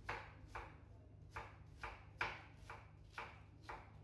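Chef's knife chopping onion on a wooden cutting board: about eight separate knife strokes, roughly two a second and a little uneven, each a short sharp knock of the blade on the board.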